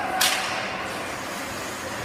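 One short, hissing scrape on the rink ice about a quarter second in, over steady ice-arena background noise.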